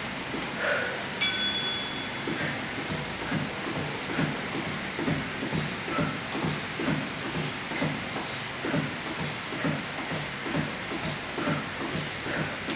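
A single short bell-like chime rings about a second in. It is followed by a steady rhythm of soft low thuds, about two a second, from sneakered feet alternately landing on a tile floor during mountain climbers.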